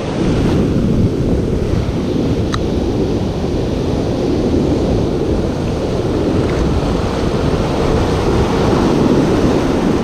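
Wind buffeting the microphone over the steady wash of breaking surf, with one brief click about two and a half seconds in.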